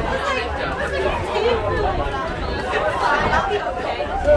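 Several people chatting at once, overlapping voices with no clear words, over a steady low rumble.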